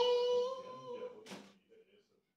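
A child's high voice humming or singing one long held note that dips slightly at the start and fades out after about a second and a half, with a short hiss near the end.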